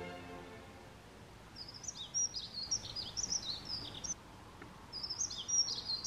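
A small songbird singing in two runs of quick, high chirps and warbles, separated by a short pause. Orchestral music fades out in the first second.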